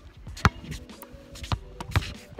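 A basketball bouncing several times on an outdoor asphalt court, sharp separate thuds, the loudest about half a second in, over faint background music.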